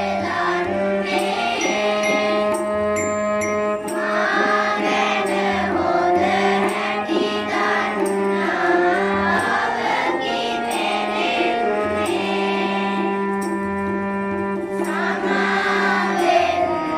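A group of schoolchildren singing a Sinhala Buddhist devotional song (bodu gee) in unison. Behind them is an instrumental accompaniment of steady held notes and a regular drum beat.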